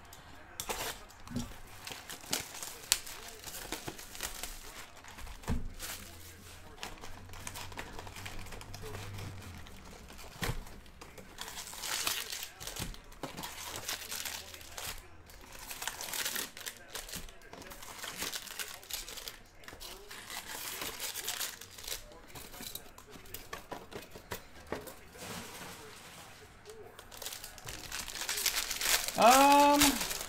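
Plastic wrapping crinkling and tearing as a sealed trading-card box and its packs are unwrapped by hand, with scattered rustles and light taps from handling the cardboard box. The crinkling comes in louder spells, the loudest near the end.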